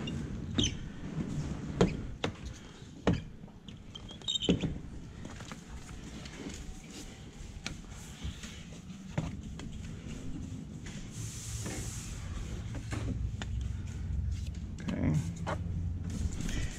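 Squeegee and hard card being pushed across wet window glass: scattered squeaks, scrapes and taps as water is cleared off the glass, with a brief hiss about eleven seconds in.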